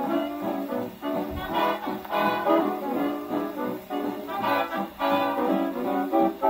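Swing dance band playing an instrumental brass passage, led by trombone and trumpets, reproduced from a 1937 shellac 78 rpm record on an acoustic gramophone.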